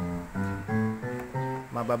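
Electronic keyboard playing a run of about five short bass notes one at a time, roughly three a second, in the low register at its left-hand end.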